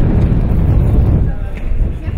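Wind buffeting the microphone: a loud, low rumble that eases off near the end.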